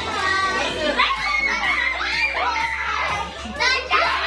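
A group of children and adults shouting, squealing and laughing excitedly all at once, with music playing underneath. A loud, high child's squeal rises near the end.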